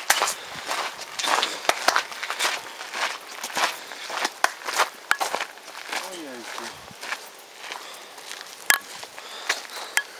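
Footsteps crunching irregularly on a gravel road, with one sharper click near the end. A brief low voice sounds about six seconds in.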